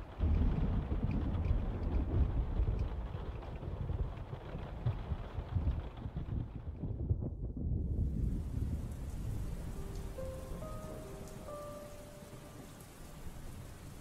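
Steady rain with rolling, rumbling thunder, slowly fading down. About ten seconds in, a few soft held musical notes come in over the rain.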